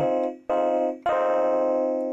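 Ableton Live's Electric, a physically modelled electric piano, playing three chords with its pickup input driven for a little distortion. The first two are short; the third, about a second in, is held and fades out.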